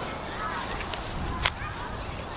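A small bird calling outdoors: a quick run of about six high, falling chirps, each trailing into a short steady note, with one sharp click about one and a half seconds in.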